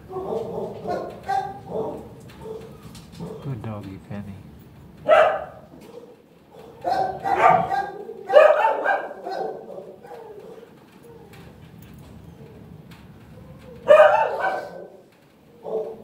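Dogs barking in short bouts: a bark about five seconds in, a cluster of barks between seven and nine seconds, and another loud bark near the end.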